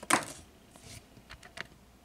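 Hands handling a trading card: a brief rustle just after the start, then a few light clicks about a second and a half in.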